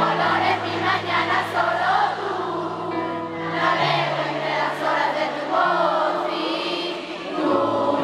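Live pop concert music heard from the audience through the venue's sound system: singing over held low bass notes that change every couple of seconds.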